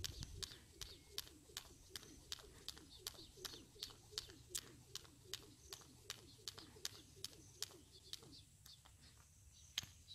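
A skipping rope slapping concrete steps in a steady faint rhythm, about two and a half slaps a second, stopping about eight and a half seconds in. One sharper tap comes near the end.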